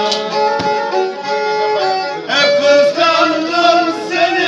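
Black Sea kemençe playing a folk melody in held, stepping notes, with men's voices joining in song from about halfway through.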